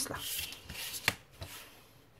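A sheet of scrapbook paper rustling and sliding over a cutting mat as it is turned, with a sharp knock about a second in and a softer one just after as a metal ruler is laid down on it.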